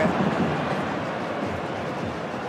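Stadium crowd of tens of thousands: a steady dense noise of many voices together, easing slightly over the two seconds.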